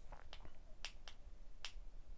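Several faint, sharp clicks, about six in two seconds and unevenly spaced, the last three the loudest.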